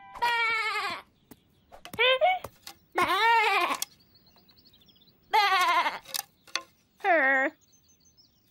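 Cartoon lamb's voice bleating in about five short calls that bend up and down in pitch, with a few light clicks between them.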